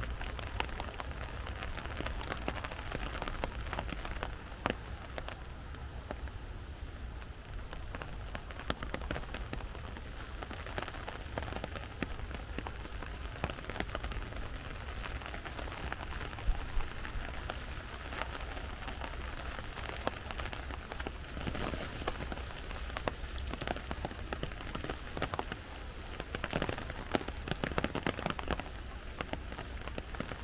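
Steady rain pattering on the leaves and ground of a forest trail, with many scattered sharper drop hits, over a low steady rumble.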